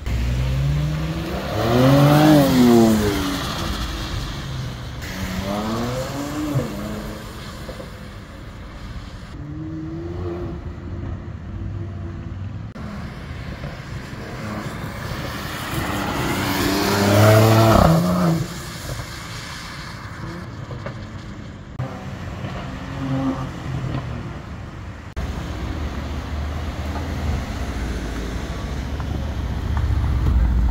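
White Mercedes C-Class sedan accelerating hard, twice: the engine note climbs steeply and then falls away as the car goes by. The second run, a little past halfway, is the louder.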